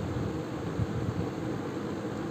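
Steady background noise with no speech: an even hiss with a low rumble of room noise, such as a fan or air conditioner heard through the recording microphone.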